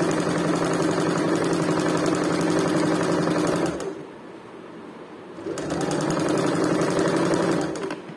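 Sewing machine running steadily as it stitches a seam joining two layers of cloth. It stops for about a second and a half around the middle, then runs again until just before the end.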